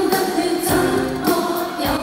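Live Cantopop music from a concert stage: sung notes held over a band backing with drum hits.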